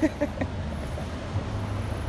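Steady low rumble of city street traffic, with a last spoken word and a short laugh just at the start.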